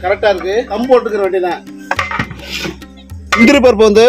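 A man talking over background music, with a brief clatter about halfway through.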